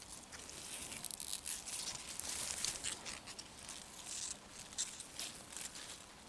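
Faint rustling and crackling of beetroot leaves and stems, and of soil, as a hand grips the plants at the base.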